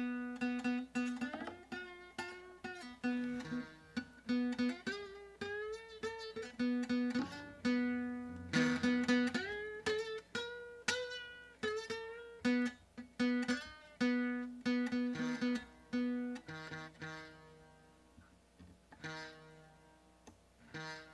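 Nylon-string Mustang classic acoustic guitar with a busted bridge, picked one note at a time in a halting melody. Several notes slide or bend up in pitch, and the notes thin out and get quieter near the end. The broken bridge leaves the top strings impossible to tune.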